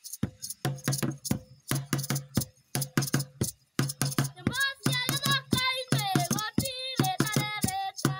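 A drum beaten with a stick in a quick, steady rhythm, joined about halfway through by boys singing a folk song.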